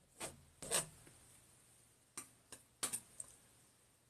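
Palette knife scraping oil paint onto a canvas in short, choppy strokes: two scrapes in the first second, then a quick run of four or five starting about two seconds in.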